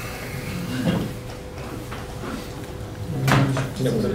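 Indistinct low voices with a sharp knock about three seconds in, over a faint steady hum.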